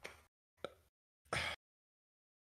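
Mostly dead silence in a pause between speech, broken by a tiny click about two-thirds of a second in and a brief soft vocal sound from a headset microphone about a second and a half in.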